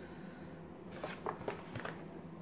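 A few faint clicks and rustles of a product box and its packaging being handled, starting about a second in, over a quiet room background.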